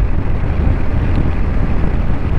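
Wind rushing over the microphone with the motorcycle's engine and tyres running steadily underneath, at a cruise of about 60 km/h. The result is a loud, even noise with no breaks or distinct tones.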